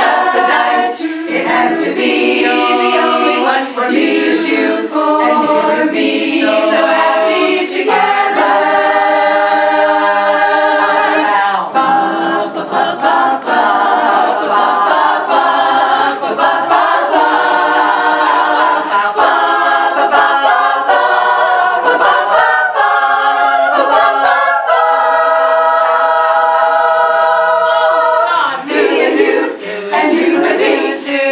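Women's barbershop chorus singing a cappella in close harmony, the voices moving through changing chords and holding some chords for a few seconds.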